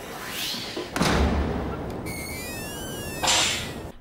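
A comedy-show knockout sound effect: a sudden heavy thud about a second in as a body goes down, then an electronic effect of several thin tones gliding up and down across one another, and a short noisy burst near the end.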